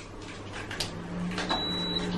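Small plastic Kinder Surprise toy pieces clicking faintly as they are fitted together by hand, a few separate clicks, with a faint low hum starting about a second in.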